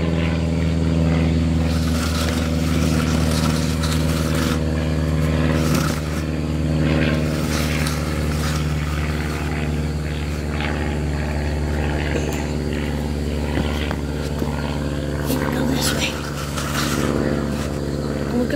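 A steady low hum from a running motor, with several pitches held level and unchanging. A few brief scraping and rustling noises come over it now and then.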